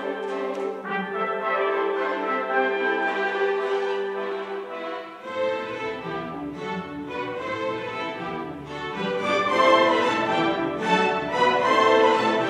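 Youth orchestra playing, with long held notes at first. Deeper instruments join about five seconds in, and the music grows fuller and louder toward the end.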